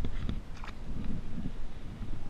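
Wind on the camera microphone, with a few short knocks or splashes in the first second.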